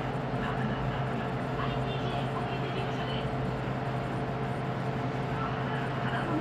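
Restaurant room tone: a steady low hum, as from kitchen refrigeration or ventilation, with faint voices in the background.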